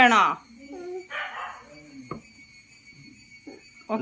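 Short, high-pitched vocal sounds from a young child, with a single sharp click about two seconds in.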